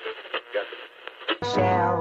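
Thin, narrow-toned sound of an old radio broadcast, with a man's voice broken and indistinct. About two-thirds of the way in, brass-led dance-band music starts in full range.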